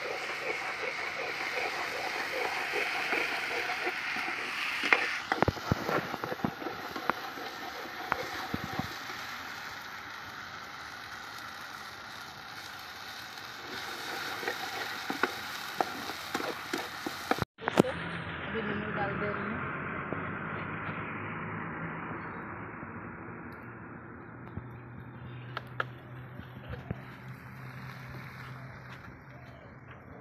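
Onions and ginger-garlic paste sizzling as they fry in oil in a metal pot over a wood fire, with a metal ladle clicking and scraping against the pot as it is stirred. The sound cuts out for a moment about halfway through and is duller afterwards.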